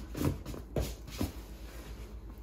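Cardboard box and its plastic packaging rustling and crinkling as the contents are pulled out by hand, a few separate rustles in the first second and a half, then only faint handling noise.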